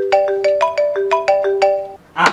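Mobile phone ringtone: a quick melody of bright electronic notes, about seven a second, that cuts off abruptly just before the end as the call is answered.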